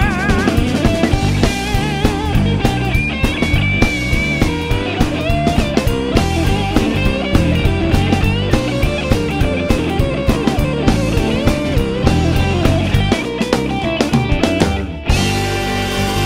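Rock-and-roll band playing an instrumental break: electric guitar lead with bent notes over electric bass and drum kit. Near the end the band drops out for a moment, then comes back in.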